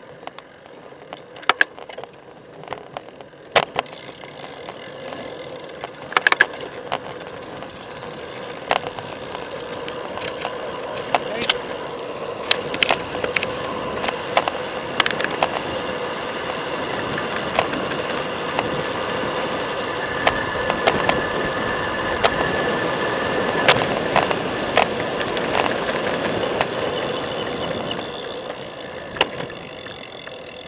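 Wind rushing over a moving bicycle's camera microphone and tyres rolling on pavement, building as the bike gathers speed and easing near the end as it slows, with scattered sharp clicks and knocks and a brief high squeal near the end.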